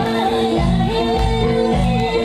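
Nepali dance song: a singing voice with gliding pitch over a steady beat of about two strokes a second.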